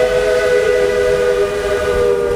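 Steam locomotive's chime whistle blowing one long, steady blast, several notes sounding together as a chord.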